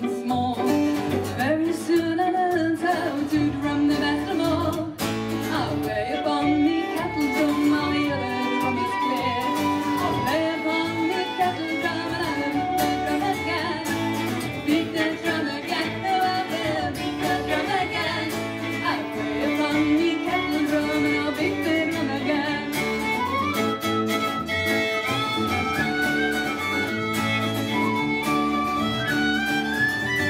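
Live folk band playing an instrumental passage: fiddle and whistle carry the tune over strummed acoustic guitar and bass guitar.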